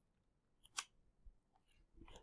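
Near silence: a pause in the narration, with one faint short click a little under a second in.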